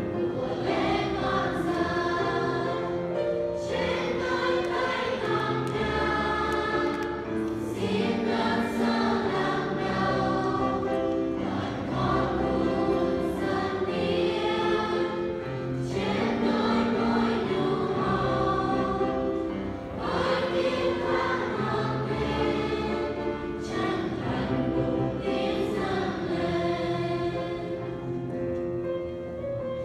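Church choir singing a hymn in chorus, in long held phrases of about four seconds each.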